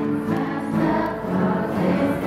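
A children's ensemble of acoustic guitars playing, with a group of voices singing along.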